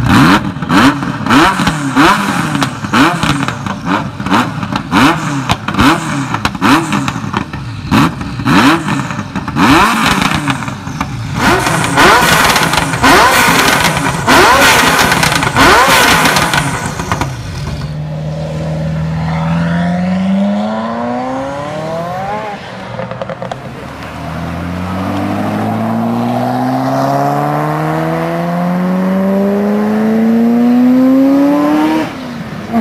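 Ferrari F40's 2.9-litre twin-turbo V8 revved at standstill in quick, repeated throttle blips, about two a second. For roughly the second half, an engine accelerates hard with long rising notes that drop and climb again through gear changes.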